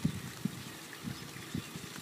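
Faint, soft, irregular strokes of a felt-tip marker writing on notebook paper, over a low steady background hiss.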